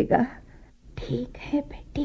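Speech only: a voice speaking, with a short pause near the middle.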